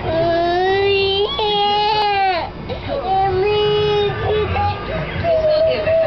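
A young boy crying: one long drawn-out wail of about two seconds that jumps up in pitch partway through, then a second, shorter wail, then choppier broken sobs near the end.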